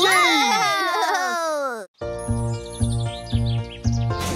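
Cartoon soundtrack: a burst of many overlapping chirpy sounds, all falling in pitch, cuts off suddenly after about two seconds. After a brief gap, background music starts with a steady, repeating bass beat.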